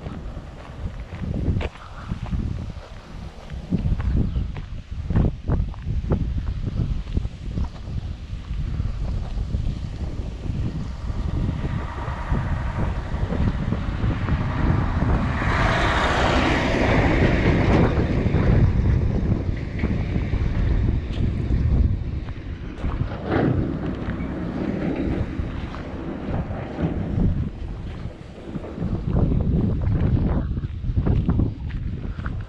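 Wind buffeting the microphone over footsteps on a gravel track. A lorry passes close by, building to its loudest about halfway through and then fading away.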